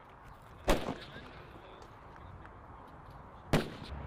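Two sniper rifle shots, sharp cracks about three seconds apart, the first about a second in and the second near the end.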